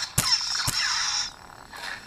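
Lightsaber clash effects from a Petit Crouton sound board (Lightmeat sound font) played through the hilt's small speaker: two sharp crackling clashes about half a second apart, with a crackling buzz that dies down after about a second.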